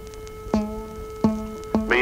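A string plucked three times, about half a second apart, each pluck ringing a low note, over a steady held tone. It is played as a violin's second string but sounds far too low, about an octave below where it should be.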